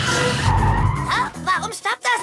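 Cartoon vehicle sound effects: a loud rush of engine rumble and skidding as the truck's pedal is pressed, over background music, followed by a few short sounds that bend up and down in pitch.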